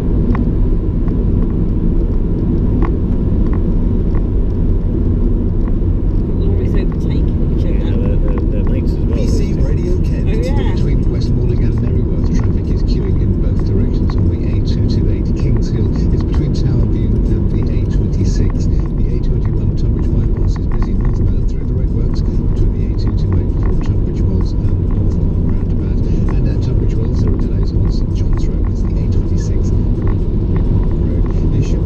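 Steady road and engine noise heard from inside a vehicle's cabin at motorway speed on a wet road, a loud even rumble throughout.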